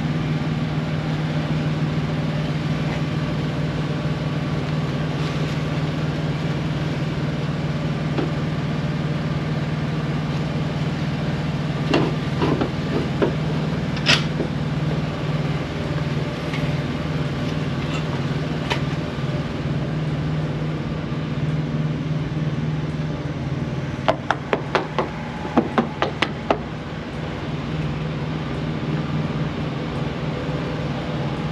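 Steady low hum of an idling diesel truck engine. Sharp clicks and knocks from the metal hardware of a ratchet strap come twice around the middle, then in a quick run of clicks near the end.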